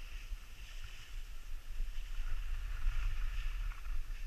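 Wind buffeting the microphone of a moving action camera as a low, uneven rumble, with the steady hiss of skis sliding over snow.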